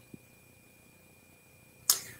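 A quiet pause with a faint steady high-pitched tone, then a single sharp click near the end.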